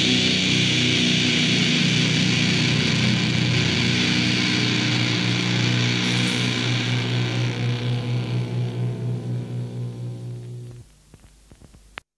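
A death metal track's final distorted guitar and bass chord is held and rings out, swelling and fading in quick pulses as it decays. It cuts off just before eleven seconds in, at the end of the song, leaving only a faint tail before dead silence.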